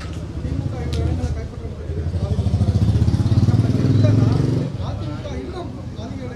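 A motor vehicle engine runs close to the microphones with a low, fast pulse. It grows louder for a couple of seconds, then stops abruptly about three-quarters of the way through, with voices around it.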